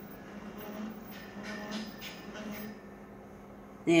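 Colour laser copier running with an abnormal mechanical noise, a steady hum with faint whining tones that dies away about three seconds in. The owner takes it as a bad sign for a fairly new machine.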